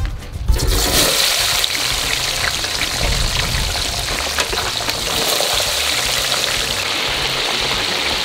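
Potato chips dropped into the hot oil of a deep fryer: a loud, steady sizzle and rush of bubbling oil sets in just under a second in and holds on.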